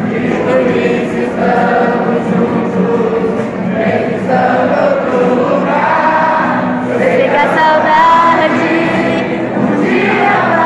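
A roomful of people singing a hymn together in unison, accompanied by acoustic guitars, in a reverberant hall.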